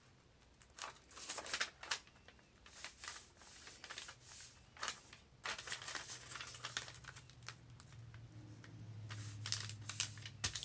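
Metallic gold paper crinkling and rustling as it is folded and creased into an accordion by hand, in short irregular crackles starting about a second in.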